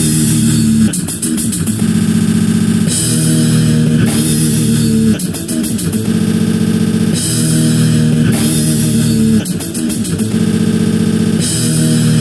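Doom/sludge metal played on heavily distorted bass guitar and drum kit: a slow, sustained low riff under cymbal wash, repeating about every four seconds, each pass ending in a short run of quick drum hits.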